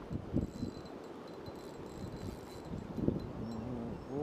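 Flowing river current with wind buffeting the camera microphone, heard as a steady rush broken by irregular low bumps.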